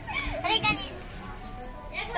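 Brief high-pitched voices of children or women calling out in the first second, then quiet background chatter of a seated crowd.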